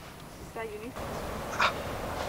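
Mostly a quiet pause with faint background noise, broken by a short pitched vocal sound about half a second in and a woman's brief 'ah' near the end.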